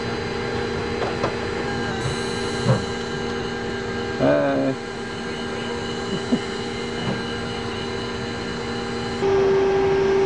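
Steady machinery and ventilation hum inside a submarine, several fixed tones held throughout, with a few light clicks and a brief voice about four seconds in. The mix of tones shifts abruptly at about two seconds and again near nine seconds.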